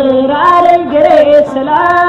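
Music: a woman singing held, melodic notes over an instrumental accompaniment.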